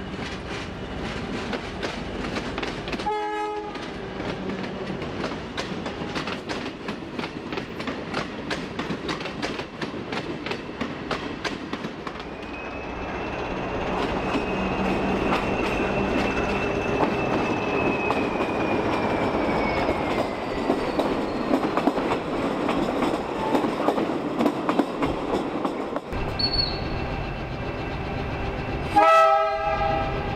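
Diesel train running through a station, its wheels clicking over the rail joints in a quick steady rhythm, with a long high wheel squeal that slowly falls in pitch midway. Short horn blasts sound about three seconds in and again near the end; the second is the loudest sound.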